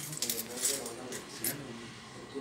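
Light metallic clinks and jingling from small silver items being handled, heard over people talking.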